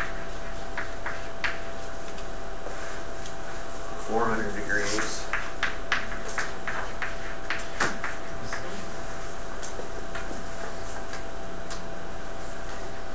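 Chalk writing on a blackboard: a run of sharp taps and short scrapes as each figure and letter is struck, irregular and quick, most dense from about four to eight seconds in. A brief murmur of voice comes about four seconds in, over a faint steady room hum.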